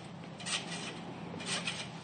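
Trampoline springs and mat creaking faintly with each bounce, about once a second, as a jumper bounces up into a flip.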